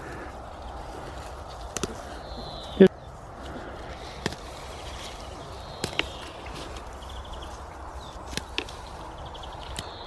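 Scattered snaps and rustles of leaves and stems as spent flower heads are pulled off by hand, the sharpest snap about three seconds in, over a steady outdoor background.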